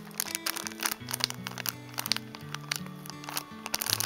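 Background music of soft, slowly changing held chords, with the crinkle of a plastic sleeve around an enamel pin card being handled.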